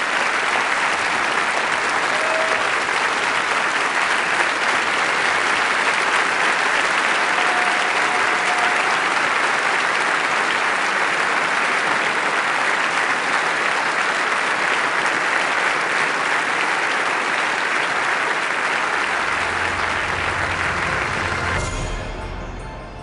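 A large audience clapping, a steady, sustained ovation that eases off near the end as music comes in underneath.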